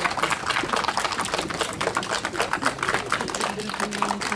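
Audience applause, children among them: many hands clapping in a dense, irregular patter.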